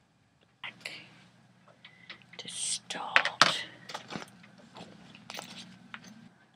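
Breathy whispering with hissing bursts, loudest about halfway through, and small mouth clicks, over a faint steady low hum.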